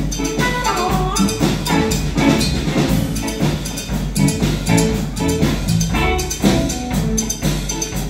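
Live small band playing an instrumental passage: drum kit keeping a steady beat under a trumpet line, with cello and electric guitar in the band.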